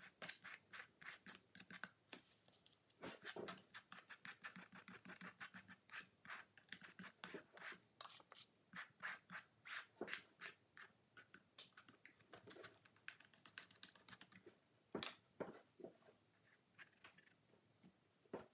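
Faint, irregular dabbing and scraping of a yellow sponge pressed and wiped over wet acrylic paint on a canvas, several soft strokes a second, with a couple of sharper ones near the middle and about three-quarters of the way through.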